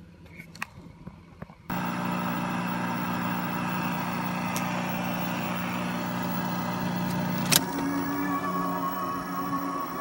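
National NV-3082 portable open-reel video tape recorder starting to run: a sudden switch-on a couple of seconds in, then a steady motor and head-drum hum with tape-transport noise. A sharp mechanical click sounds about three-quarters through, after which the hum changes tone.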